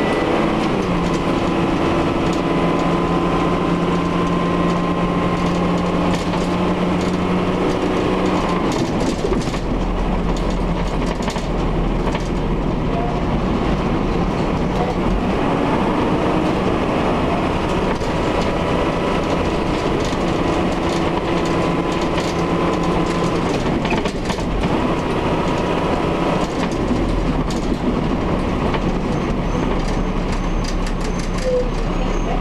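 Dennis Dart MPD single-deck bus heard from inside the saloon: its diesel engine and drivetrain running under way, with rattles from the bodywork. The engine note climbs and holds steady, drops away about nine seconds in, builds again around fifteen seconds and drops once more near twenty-four seconds.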